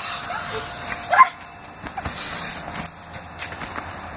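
A single short, high yelp rising in pitch about a second in, over faint rustling and a few light clicks.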